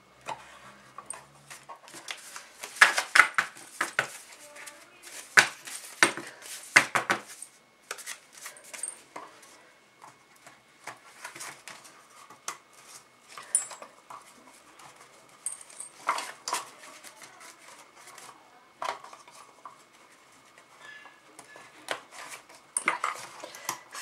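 Hinged metal binder rings clicking and card calendar pages rustling and tapping as the sheets are threaded onto the rings, with a run of sharper clicks a few seconds in.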